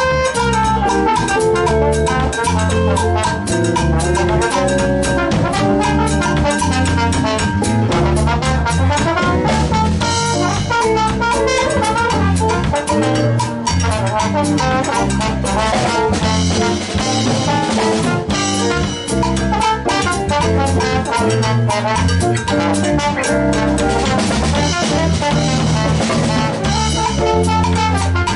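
Live Latin-jazz band playing: a bass trumpet solos over a drum kit and a steady bass line.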